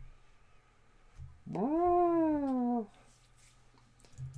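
A cat meowing once: one long call about a second and a half in, rising quickly in pitch and then sliding slowly down.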